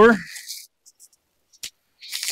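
A spoken word at the start, then a few faint crinkles and a sharp tick of plastic packaging wrap being pulled off a new skid plate.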